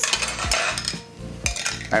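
Metal spoon scraping and clinking against a glass bowl as it scoops up macerated strawberries, with a sharp clink about a second and a half in.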